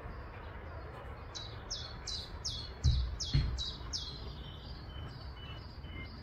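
A small songbird singing a rapid series of about nine short, high notes, each sliding downward in pitch, at about three a second, over a steady outdoor background. Two brief low thumps about three seconds in are the loudest sounds.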